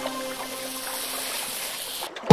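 Cartoon water sound effect, a steady rushing wash of water, under the last held notes of the children's song music fading away.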